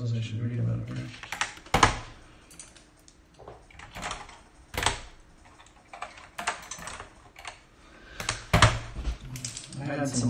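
Plastic keycaps being pulled by hand off the Alps SKCM Salmon switches of an Apple Extended Keyboard II: a string of sharp, irregularly spaced plastic clicks and snaps. The loudest come about two seconds in and near the end.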